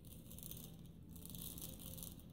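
Faint rattle and patter of sugar sprinkles shaken from a small jar onto a chocolate-coated wafer, in two short spells.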